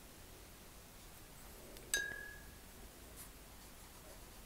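A single light clink about two seconds in, a hard object tapped once and ringing briefly with one clear tone, over faint room tone.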